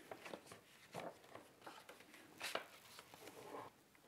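Faint handling of folded cardstock on a tabletop: a few soft rustles and light taps, the clearest about two and a half seconds in.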